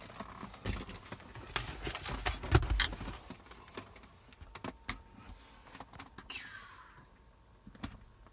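Handling noise of a phone camera being moved about inside a car: a run of small clicks and rubbing knocks, loudest about two and a half to three seconds in, then a short falling squeak near the end.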